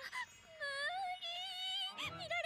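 A cartoon girl's voice letting out a drawn-out, wavering whining wail, held for about a second and a half, over light background music.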